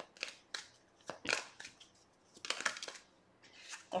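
Tarot cards (a Modern Witch Tarot deck) being handled as the next card is drawn: short papery rustles and snaps, coming in a few brief clusters.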